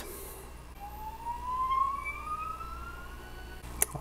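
Creality UW-01 wash and cure station's wash motor spinning up after being started in wash mode: a whine that begins about a second in and rises steadily in pitch for a couple of seconds. A short click comes near the end.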